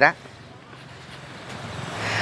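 A vehicle approaching along the street, its road noise swelling steadily toward the end.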